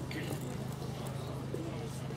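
Footsteps on wooden stage boards, a few irregular taps, over a steady low hum.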